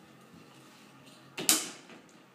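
An interior door clacking once, about one and a half seconds in, with a short ring after it.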